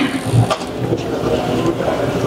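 Handling noise from a handheld microphone being passed between people: low rumbling and bumps, with a louder knock about half a second in.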